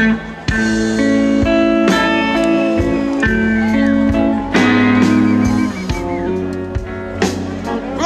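Electric blues band playing live on electric guitars and bass guitar, with held notes under a lead line of bent, wavering notes and a few drum hits.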